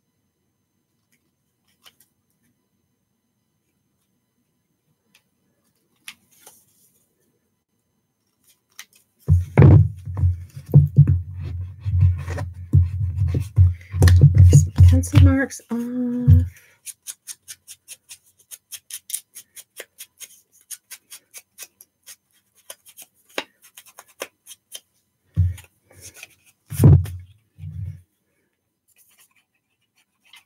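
Scissors snipping paper: a quick, even run of short sharp snips, about four a second, cutting a row of slits into a small paper piece. Before the snips there is a loud stretch of low thumping and rumbling, and a few more low thumps come near the end.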